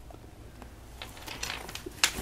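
Faint handling of a padded fabric camera backpack: light scuffing and a few small clicks start about a second in as the lid flap is moved over the packed compartments.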